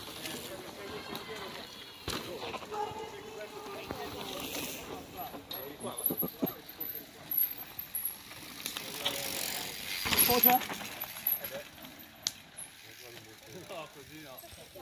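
Spectators' voices in the background, with a mountain bike's tyres on the dirt trail and its freewheel clicking; the loudest moment is a noisy rush about ten seconds in.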